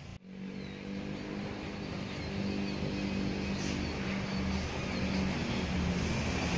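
An engine running steadily with a low hum, growing gradually louder, over street and site background noise.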